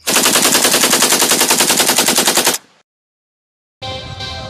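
A burst of rapid automatic gunfire, about ten shots a second, lasting about two and a half seconds and cutting off sharply. About a second of silence follows, and music begins near the end.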